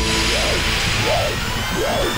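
Electronic soundtrack transition: a rising swell of hiss with a synth tone that slides up and down in pitch about every three-quarters of a second.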